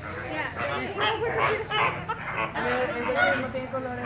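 A flock of American flamingos honking, with many short calls overlapping one another.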